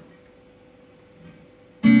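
Electric guitar: after a quiet moment, a chord is strummed hard near the end and rings on, opening a song.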